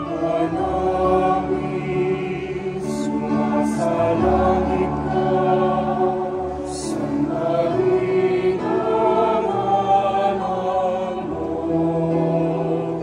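Chamber choir singing a sacred piece in several parts, holding sustained chords that shift every second or two, with a few brief hissed consonants.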